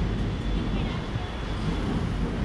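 Steady low rumble of road traffic, mixed with buffeting on the microphone, with faint voices in the background.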